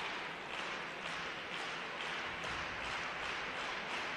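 Arena crowd noise with scattered clapping from spectators.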